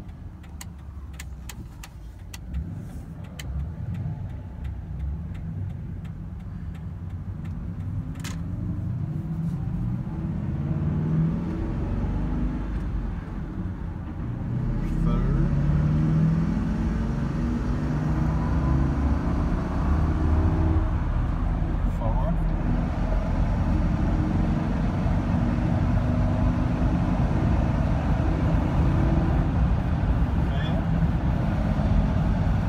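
Ford F-350 Super Duty's 6.8-litre Triton V10 engine heard from inside the cab, accelerating under load with its pitch rising through the gears. It gets louder about halfway through, then settles into a steady highway drone at about 3,000 rpm.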